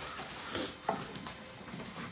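Light handling noise: soft rustles and a few small knocks as a shop-vacuum hose end is brought to the mitre saw's dust port, with one sharper click about a second in. No vacuum motor is running.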